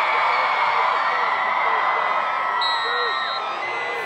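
Football crowd cheering and shouting, many voices at once with whoops rising and falling, at a steady level.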